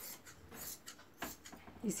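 Tailoring scissors cutting through blouse fabric in several short snips, separating a strip of cloth. A woman's voice starts near the end.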